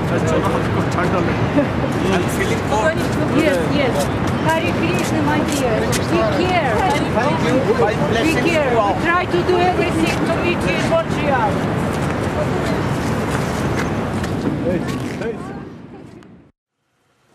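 Several people talking over one another, indistinct chatter from a small group, over a steady low background noise.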